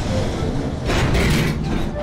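Animated steam locomotive sound effects: a low rumble with hissing steam that swells about a second in.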